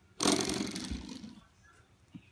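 A spring door stop flicked by a finger: its metal coil spring twangs with a rapid buzzing rattle that starts sharply and dies away over about a second.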